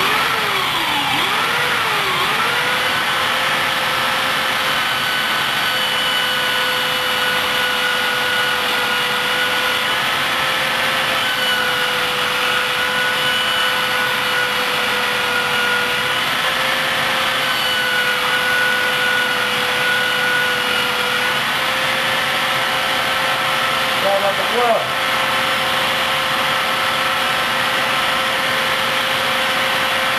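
Makeshift electric belt sander (a converted angle sander) switching on and running with a steady motor whine, its belt grinding the tarnish off a hardened steel knife blade. The pitch wavers for the first couple of seconds, then holds steady, with a brief dip late on.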